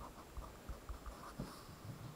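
A pen writing on lined paper: faint scratching strokes with a few small ticks.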